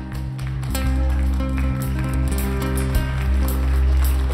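Live band of Arabic and Western instruments playing: a clarinet melody over steady double bass notes, with drums and percussion coming in on a regular beat about a second in as the music grows louder.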